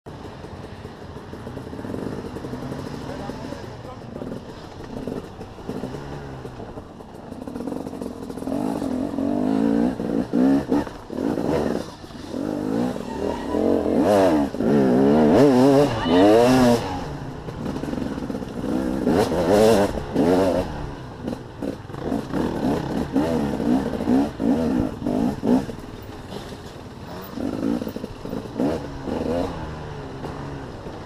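Enduro motorcycle engine heard from the rider's helmet, revving up and dropping back repeatedly as it accelerates and slows along a dirt track, loudest in the middle stretch.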